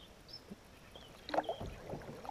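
Water splashing and knocking as an estuary perch is scooped into a landing net beside a kayak, starting about a second and a half in after a near-quiet start.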